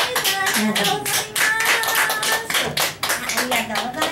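Applause from a small audience, clearly separate claps, with voices talking over it.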